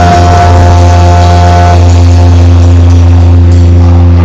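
Live rock band holding one long chord at full volume: a steady deep bass note under sustained guitar tones, with the highest note dropping out about halfway through.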